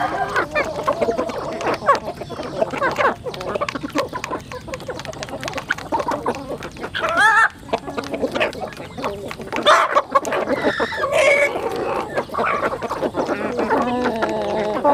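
A flock of chickens, hens and roosters, clucking and calling while they feed, with many quick taps of beaks pecking grain from the trough. A few louder calls stand out about seven and ten seconds in.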